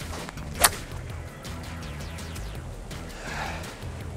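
A golf club strikes the ball once, a single sharp crack about half a second in, over faint steady background music.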